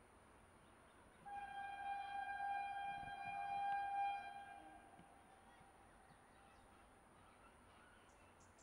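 Horn of an approaching Vande Bharat Express electric train set, still out of sight round the curve. One steady single-note blast of about three seconds starts a second in, then fades away.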